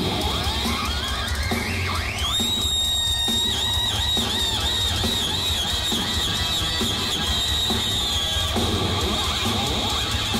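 Heavy metal band playing live: an electric guitar note slides up over about two seconds into a high screaming pitch. It is held with a wide, wavering vibrato until about eight seconds in, over the bass and drums.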